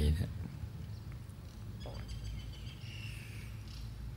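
A man's voice finishes a word, then a pause holds a steady low hum of background noise, with a few faint high chirps about two to three seconds in.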